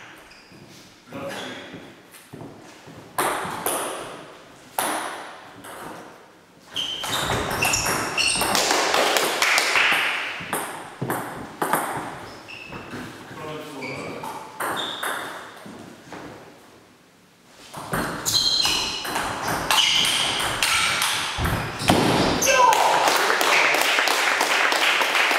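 Celluloid-type table tennis ball clicking off the bats and the table during rallies: a string of sharp, quick knocks with short pauses between points.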